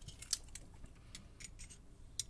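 A scatter of small, light metallic clicks and ticks, the sharpest about a third of a second in, from handling a disassembled Mottura Champions C39 euro cylinder lock and its loose pins.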